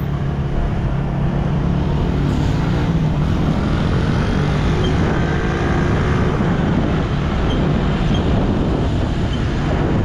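Motorcycle engine running at a steady cruise, a continuous low drone mixed with wind and road noise.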